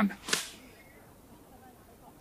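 A man's voice ending a sentence, followed by a brief sharp hiss just after. Then only faint room tone.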